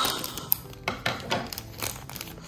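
A thin clear plastic bag crinkling in the fingers as a small figure is worked out of it, in several short rustling bursts with a sharp click about half a second in.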